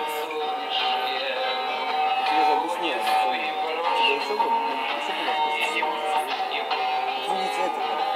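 Recorded chanson song playing as a lip-sync backing track: a singing voice over sustained accompaniment notes, thin and without bass.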